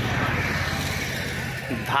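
Steady outdoor background noise with a constant low hum and indistinct, distant voices; no clear foreground sound.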